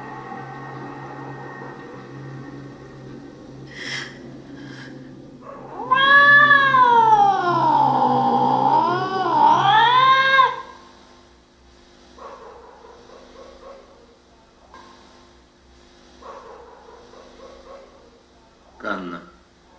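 A cat's long yowl, the loudest thing here, lasting about four and a half seconds: it falls in pitch, wavers, and rises again before breaking off. Before it a steady low hum runs with a few faint clicks.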